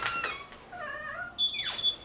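A house front door being opened: a click at the start, then wavering squeaks and a brief high squeal as the door swings open.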